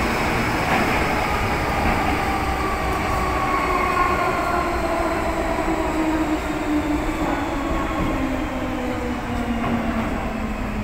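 Inside an MTR metro car: the traction motors whine in several tones that fall steadily in pitch as the train slows, over the constant rumble of wheels on rail.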